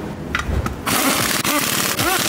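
Impact wrench with a wheel impact socket running a wheel bolt in on the front wheel hub. A couple of light clicks come first, and the tool starts loud about a second in with a rising and falling pitch.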